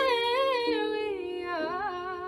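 A young woman singing solo into a handheld microphone: a slow, drawn-out phrase whose held notes bend up and down in several wavering turns.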